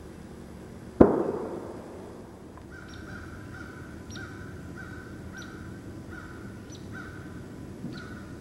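A single loud, sharp bang about a second in, echoing away over roughly a second. Then a bird calls over and over in a steady run of short notes, about two a second, over faint outdoor background.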